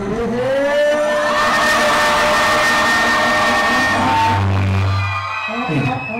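Electronic music swell: synth notes glide up and hold over a rushing hiss. A deep bass note comes in about four seconds in.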